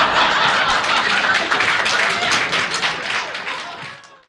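Audience applauding with dense, rapid clapping that tapers off slightly near the end, heard through a worn, multi-generation VHS recording.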